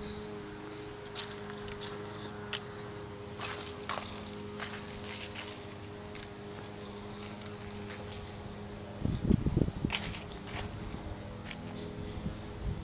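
Footsteps on grass with scattered light clicks and rustles, over a steady low hum. About nine seconds in comes a second or so of low rumbling noise.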